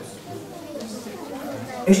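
Quiet chatter of several voices in a large room, then a man's recorded narration starts abruptly near the end.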